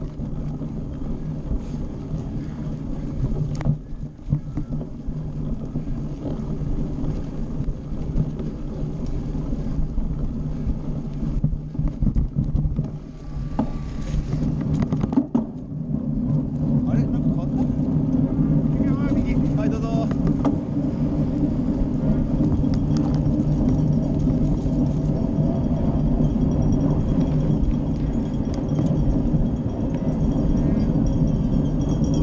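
Cyclocross bike ridden at speed, with rushing wind on the bike-mounted camera's microphone and the bike rattling over rough grass trail. The noise grows louder and steadier about halfway through, once the bike is on the paved road.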